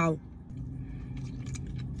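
Quiet car-cabin hum, a steady low drone, with a few faint rustles and small clicks about a second in as the pretzel is handled.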